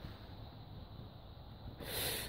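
Faint background hiss in a pause, then a short sharp breath near the end.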